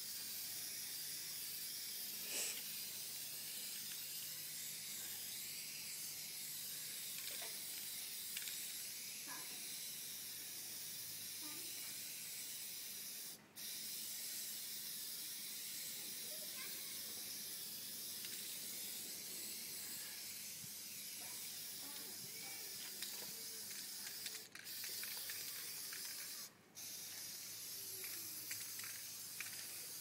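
Aerosol spray can of black appliance epoxy paint spraying in a long, steady hiss, let off briefly three times.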